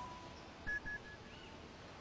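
Three short, quick high-pitched pips at one steady pitch about a second in, followed by a faint short whistle. At the start, the ringing tail of a rising three-note chime fades out.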